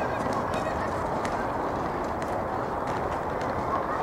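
Steady rushing outdoor noise with faint shouts from young football players and a few light taps.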